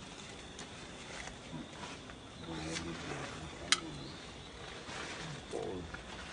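Low, short voice-like calls, one run of them a little before the middle and another near the end, with a single sharp click a little past halfway.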